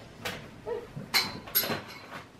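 Three short, sharp handling noises, knocks and rustles, as a child reaches down under a table to fetch a toy.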